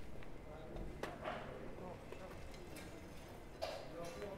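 Quiet city-street ambience with faint, indistinct voices of people talking nearby. There is one sharp click a little before the end.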